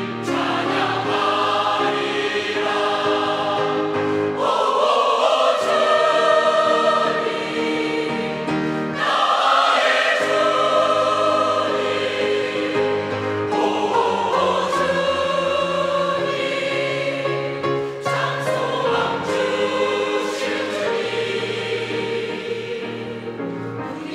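A large mixed choir of women's and men's voices singing a Korean hymn in harmony, in long sustained phrases that swell and fade, to the words "O Lord, my Lord, O Lord who gives true hope."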